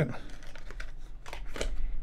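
Light handling noise: a few soft clicks and rustles as small plastic USB adapters are picked out of a cardboard phone box and turned in the fingers.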